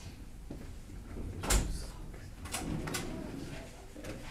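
A cabinet drawer or its door shutting with one loud knock about a second and a half in, followed by two lighter clicks.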